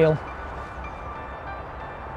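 Steady outdoor background noise: an even hiss over a low rumble, with no clear event in it. A man's voice trails off right at the start.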